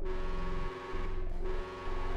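Novation Supernova II synthesizer playing a dense drone chord of several steady tones over a buzzing low end. The sound dips in level briefly about once a second, giving a slow pulse.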